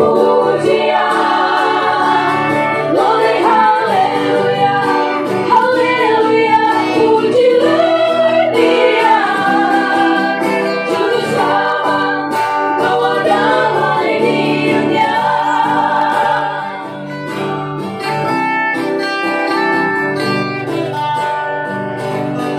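Women's vocal group singing an Indonesian Christmas gospel song together into microphones, backed by strummed acoustic guitars. Near the end the voices drop away, leaving the guitars.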